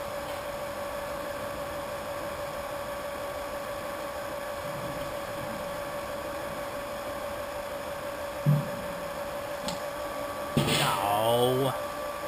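Small electric wort pump running with a steady hum while it pumps wort through a plate chiller. A brief low sound comes about eight and a half seconds in, and a person's voice near the end.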